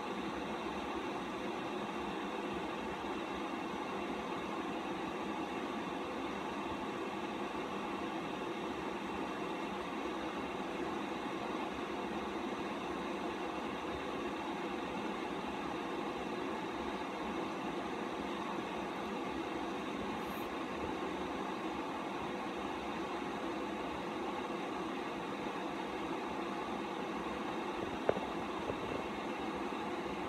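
A steady mechanical hum with several fixed tones, unchanging throughout, like a fan or small motor running; a single faint click about two seconds before the end.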